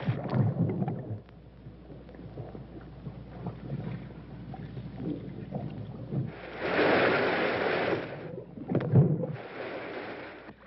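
Water splashing and churning in a flooded tank, then a low, muffled underwater rumble while the tank's drain valve is wrenched open. About six seconds in, a loud rush of water lasts around two seconds as the valve lets the tank drain out through the pipe, followed by a heavy splash or thud near the end.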